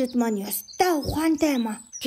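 High-pitched cartoon character voice: a voice actor speaking as a sparrow, in short phrases with wide rises and falls in pitch and a brief pause about a second in.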